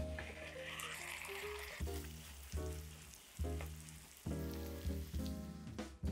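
Zucchini-and-egg omelette sizzling in a hot oiled frying pan as it is slid back in to cook its other side, loudest for the first couple of seconds and then dying away. Instrumental background music plays throughout.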